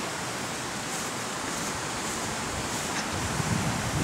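A fast-flowing river rushing, heard as a steady, even hiss.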